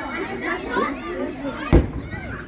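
A single ceremonial cannon shot fired from a raft on the river: one deep boom near the end, heard across the water over children's shouting voices.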